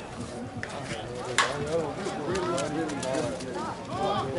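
Background talk from players and spectators, with a single sharp crack about a second and a half in, typical of a slowpitch softball bat hitting the ball.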